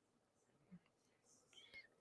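Near silence: faint room tone, with only a couple of barely audible small sounds.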